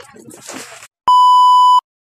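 A single loud electronic beep, one steady high tone a little under a second long that starts and stops abruptly, of the kind laid over a vlog in editing. It comes about a second in, after the voices and handling noise have cut out.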